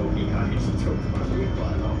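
Inside a VDL DB300 double-decker bus on the move: a steady low engine and road rumble with a faint steady hum, heard from within the passenger cabin.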